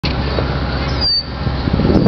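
Low, steady rumble of an idling vehicle engine, with a brief high-pitched chirp about a second in.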